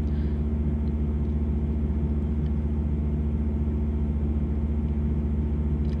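Steady low machine hum, a drone of several even low tones that holds level without change.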